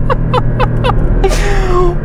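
A man laughing, four short laughs in the first second, then a breath in, over the steady drone of the Porsche 718 Boxster GTS's 2.5-litre turbocharged flat-four heard from inside the cabin.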